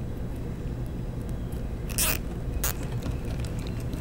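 Small plastic zip ties being handled and threaded into loops on a printer belt: a short rustle about halfway through and a single sharp click just after it, over a steady low hum.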